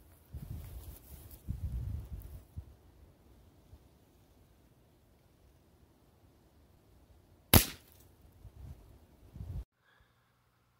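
A single .22 LR rifle shot about three-quarters of the way in: one sharp crack with a brief tail. Low rumbling noise fills the first couple of seconds, and the sound cuts off suddenly near the end.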